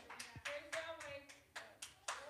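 Congregation clapping hands, sharp claps at about four a second, with faint voices underneath.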